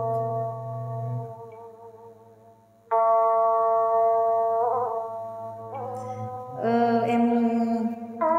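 Instrumental intro of a backing track: long held melodic notes, fading to a lull about two seconds in, then new notes entering about three seconds in and again near the end.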